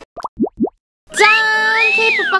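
Three quick rising 'bloop' cartoon sound effects in the first second. After a brief silence, a jingle with a held, gliding tone comes in about a second in.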